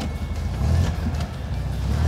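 A vintage Porsche 356 1600 Super's air-cooled flat-four engine running with a low, steady sound, with background music underneath.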